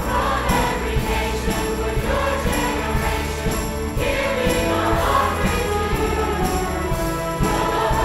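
Children's choir singing a worship song with orchestra accompaniment, violins among the strings, over a steady beat of about two strokes a second.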